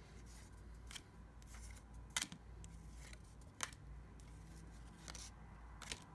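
Baseball trading cards flipped through by hand in a stack: four short, crisp card-edge snaps about a second and a half apart.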